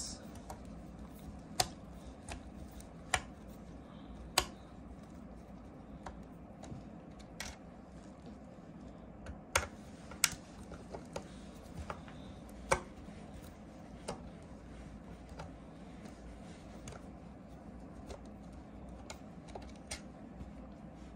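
Scattered sharp clicks and taps, a dozen or so at irregular intervals, of a screwdriver and metal screws being worked on the cylinder heads of a small portable air compressor, over a low steady background hum.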